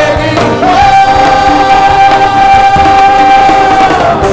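Male lead vocalist singing live over the band, holding one long high note for about three seconds.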